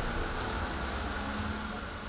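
Steady low room hum and hiss with no distinct event. The tattoo machine is switched off and makes no buzz.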